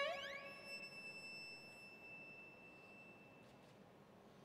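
Solo violin sliding quickly up to a high note and holding it softly, the note fading away over about three seconds.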